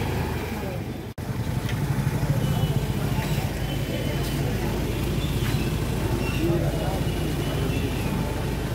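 Street noise of motor vehicle engines running steadily, with indistinct voices of people around, broken once by a brief gap about a second in.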